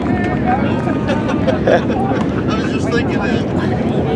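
Background voices talking over a steady, dense rumble of racing engines.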